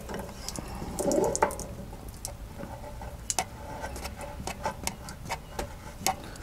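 Light metallic clicks and scrapes as a new magnesium anode rod is fitted by hand into an RV water heater's tank opening, with a little water trickling from the tank.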